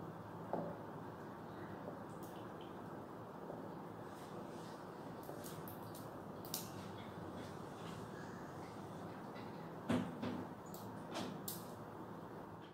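Vinegar pouring in a thin stream from a plastic bottle into a glass bottle, a faint, steady trickle. A few light clicks, and a louder knock about ten seconds in, come from the bottles being handled.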